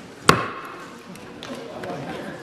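A single strike of a wooden gavel on the desk, a sharp knock with a short ring after it, about a quarter second in, closing the meeting.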